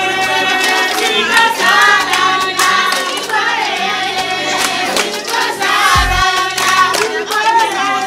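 A group of women singing together in chorus, with hand clapping; a short low thump about six seconds in.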